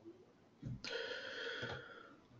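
A person's breath near the microphone, about a second long, starting just over half a second in after a soft thump.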